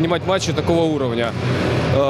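A man speaking close to the microphone, with pauses between phrases.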